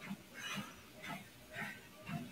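Soft, regular footfalls on a compact walking-pad treadmill belt, about two steps a second, at a steady walking pace.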